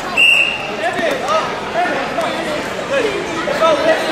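A short referee's whistle blast about a quarter second in, then spectators and coaches calling out across a large echoing gym as the wrestlers scramble.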